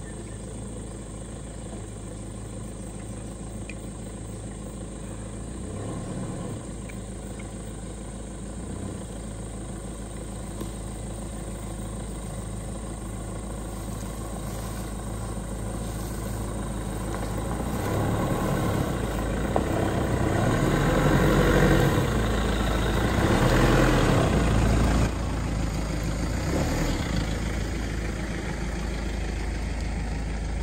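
An engine running steadily. It grows louder and rougher in the second half, then drops back suddenly near the end.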